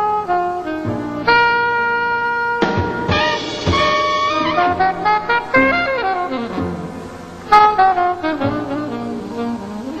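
Live small-group jazz: a saxophone solo line, holding one long note a little over a second in and then moving in quick runs, over drums with cymbals.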